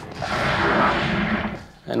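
A blast-like sound effect from a submarine war film's soundtrack, part of its explosion and hull-impact sounds: a single rush of noise that swells and fades over about a second and a half.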